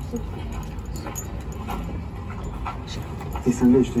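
A short film's soundtrack played over open-air cinema speakers: a faint steady hum with scattered small clicks, then a French voice starting to speak near the end.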